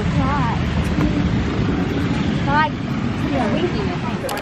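A steady low outdoor rumble, with a child's high voice calling out briefly near the start and again about two and a half seconds in.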